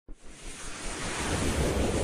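A whoosh sound effect for an animated logo intro: a rushing noise swell that grows steadily louder.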